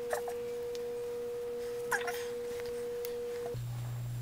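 A steady, pure electronic beep tone held for about four seconds, cutting off abruptly near the end, with faint traces of voice and a light tap beneath it.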